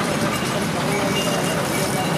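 Busy street ambience: background chatter of several voices over steady traffic noise.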